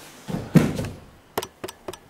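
A person landing on the mat in an aikido breakfall: a heavy thud about half a second in, followed by a few short, sharp taps.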